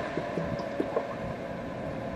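Air purifier fan running with a steady hum over airflow noise, and a few short faint ticks in the first second as its fan-speed button is pressed.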